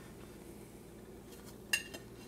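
A single short clink of a metal spatula against a ceramic plate near the end, as fried toast is moved onto it; otherwise faint room tone.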